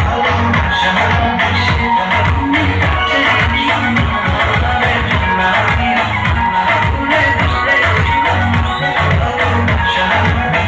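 Loud dance music with a steady, pulsing bass beat, played over a PA loudspeaker for dancing.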